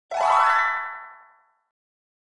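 A single cartoon-style "boing" sound effect for an animated logo: a bright pitched tone that bends upward at the start, then fades away over about a second and a half.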